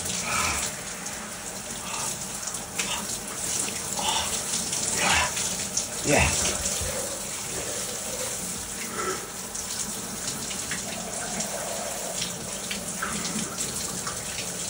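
Cold water from an overhead rain shower spraying steadily onto a person's head and body and splashing on the shower floor. Over it come several sharp breaths and short exclamations, reactions to the cold water.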